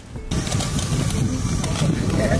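A large staged fire effect going up: a sudden loud rush with a deep rumble begins a fraction of a second in and carries on steadily.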